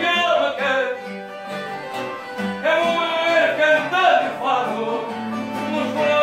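Live fado: a singer holding and bending long sung notes over plucked guitar accompaniment.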